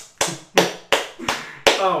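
One person clapping hands, a steady run of sharp claps about three a second, with a short spoken "oh" near the end.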